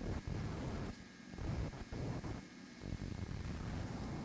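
Low rumbling background noise with no clear source, dropping away briefly twice.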